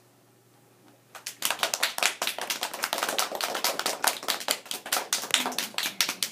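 A class of young children applauding: a short hush, then many quick, uneven hand claps starting a little over a second in.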